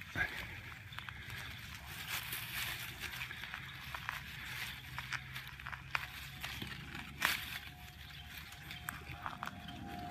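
Hand digging through soil and dry grass stems around a wapato (duck potato) plant to reach its tuber: continuous rustling and crackling with scattered small snaps, one sharper snap a little past seven seconds in.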